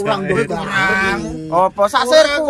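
A man's voice drawing out one long, steady held note for about a second, with shorter voice sounds before and after it.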